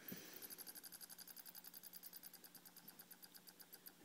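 A hand-spun VCR drum motor on a Bedini SSG pulse circuit, coasting down. It gives a fast run of faint, even ticks that gradually slows.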